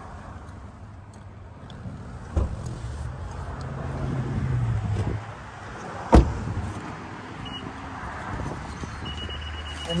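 A 2018 Honda Clarity's car door shutting with one sharp thump about six seconds in, over a steady low rumble. A short high beep follows, then a longer one near the end.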